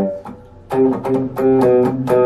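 Electric guitar, a Godin TC played through an MXR Fat Sugar overdrive pedal, picking a single-note E-minor funk/disco riff. A ringing note dies away, then a run of short picked notes starts about two-thirds of a second in, at roughly four to five notes a second.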